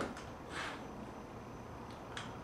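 Faint handling sounds of an MDF rip jig being adjusted on a table saw top: a light click at the start and a brief scrape about half a second in, over quiet shop room tone. The saw is not running.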